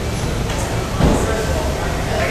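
Indistinct background voices over a steady low rumble of street ambience, with a brief louder sound about a second in.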